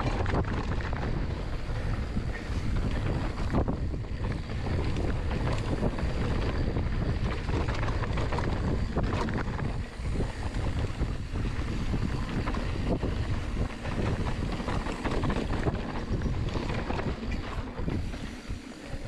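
Mountain bike descending a dirt trail: wind rushing on the microphone over the rolling of the tyres on dirt, with frequent small clicks and rattles from the bike.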